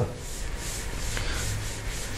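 A cloth duster wiping chalk off a chalkboard in repeated back-and-forth strokes, a steady scrubbing hiss.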